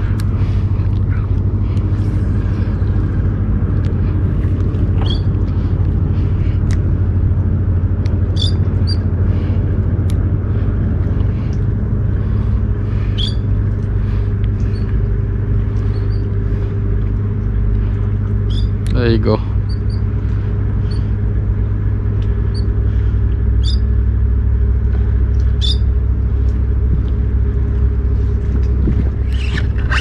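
Steady low rumble and hum, like a motor running nearby. Short high chirps are scattered through it, and about two-thirds of the way in comes one brief call that rises and falls in pitch.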